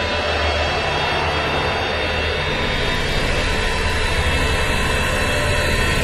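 Loud, sustained trailer sound-design drone: a dense, steady roar over a deep hum, holding level with no distinct hits.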